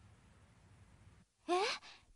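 Faint low hum that cuts off a little over a second in, then a short surprised "eh?" in a girl's voice, rising in pitch.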